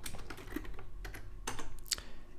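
Typing on a computer keyboard: a run of irregular key clicks, with two louder keystrokes near the end.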